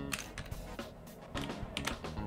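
Computer keyboard keys clicking as a few letters are typed, over soft background music.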